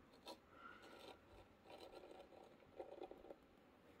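Near silence with a few faint, short scratches: the tip of a glue tube rubbing over baking-soda-crusted plastic on a tail-light lens as glue is dabbed into the crack.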